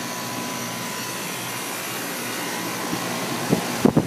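Guardian 4-ton central air conditioner condensing unit running: a steady whoosh from the spinning condenser fan over its Bristol compressor, with a thin steady tone. A couple of short knocks come just before the end.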